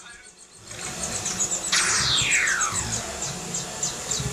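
Electronic sound effects from a Kamen Rider Ex-Aid Gamer Driver toy transformation belt: a hiss with rapid high ticking, and a tone sweeping down in pitch about two seconds in.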